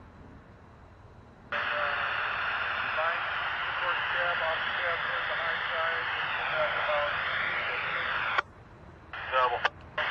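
Railroad radio transmission over a scanner: a muffled, hard-to-make-out voice under loud static that switches on sharply about a second and a half in and cuts off suddenly with a click near the end, followed by a few brief key-ups of static.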